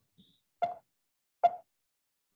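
Two brief pops, a little under a second apart.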